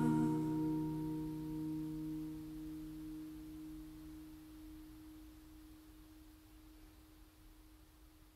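A chord on an acoustic guitar left ringing out, its notes fading slowly to near silence, the lower notes lasting longest.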